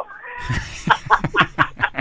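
A person's voice.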